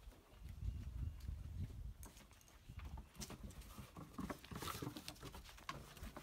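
Faint pattering and clicking of dogs' paws and claws on wooden deck boards as a puppy scampers around a larger dog, with a low rumble during the first two seconds.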